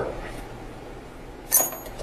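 Two halves of a metal vacuum pump housing handled as they come apart: a single light metallic clink about one and a half seconds in, with a brief ring.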